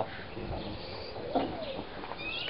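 Low background noise with a short bird call about a second and a half in.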